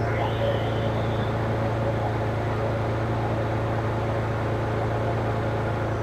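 Pontiac Fiero engine idling steadily with the air conditioning switched on, a constant low hum. A faint hiss sounds for about the first second.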